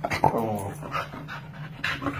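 Shetland sheepdog vocalizing with a loud pitched call in the first second, then shorter, fainter ones: she is alerting her owner to something out of place.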